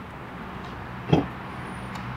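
A hatchback's tailgate latch releasing with a single short thunk about a second in, as the tailgate is lifted, over a steady low outdoor hum.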